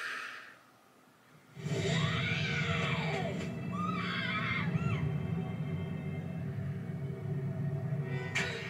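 Dramatic anime episode soundtrack playing. A short hiss is followed by a second of near quiet, then a low rumbling music bed comes in about a second and a half in, with a cry over it that rises and falls in pitch and wavers again a little later.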